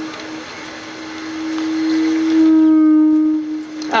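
Microphone feedback through a public-address system: a steady ringing tone that swells about halfway through, growing louder and brighter with higher overtones, then eases off near the end. A rustling noise is picked up by the microphone in the first couple of seconds.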